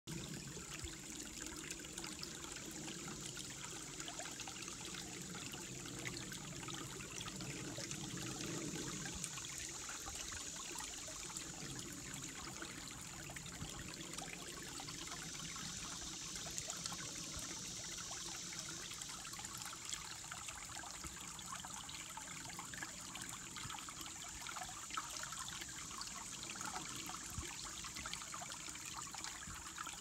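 Shallow woodland creek trickling and gurgling over rocks, with a steady high insect drone of katydids singing in the background.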